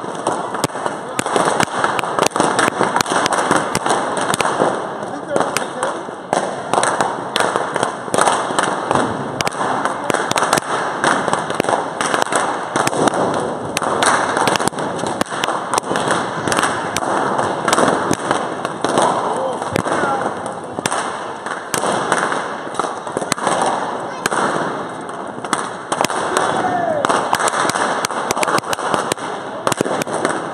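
Balloons from a giant balloon-sculpture dragon being popped by a crowd: a rapid, irregular stream of sharp pops over crowd chatter.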